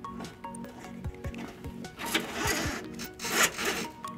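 Two rasping, rubbing sounds, about two seconds and three and a half seconds in, as the trailer power wire is worked along the car's underbody, over a bed of background music with a steady beat.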